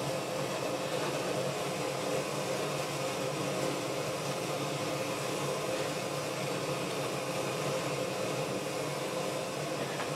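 Steady hiss and hum from a noisy amplifier left switched on, with a faint steady tone in it. The owner blames the amplifier for the noise and expects it to blow up.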